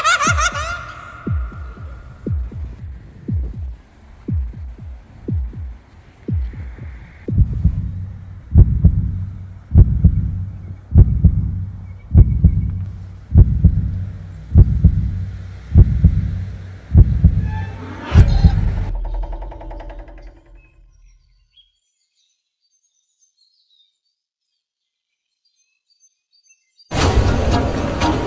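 Film soundtrack of slow, heartbeat-like low thuds, quiet at first and then louder, about one every second and a bit. Near the end a short swell rises over the last beats, they fade out, and the sound cuts to dead silence.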